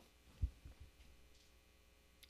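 A single soft low thump about half a second in, followed by a faint steady low hum of room tone.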